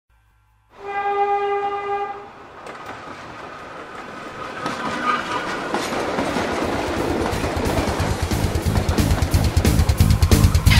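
Train horn blowing once for about a second and a half. Then the rumble and clickety-clack of a train on the rails builds steadily louder, its rhythm growing more distinct.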